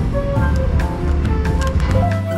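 Background music: a bass line under pitched instrument notes that change every fraction of a second, with light percussive ticks.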